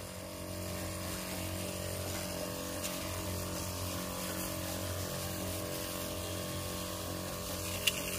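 Motorized sprayer pump running steadily with an even hum, and the hiss of disinfectant spraying from the wand.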